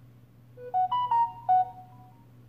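Samsung Galaxy A40's loudspeaker playing a short electronic chime of about five notes, rising and then falling back, as the phone leaves setup for its home screen.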